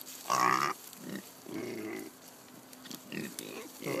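Kunekune pigs grunting as they feed on pumpkin pieces, with a short, louder pitched call about half a second in, followed by a string of quieter low grunts.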